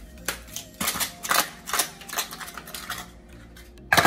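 Plastic ice cube tray being twisted, the cubes cracking and popping loose in a quick, irregular series of sharp clicks, then one louder knock near the end.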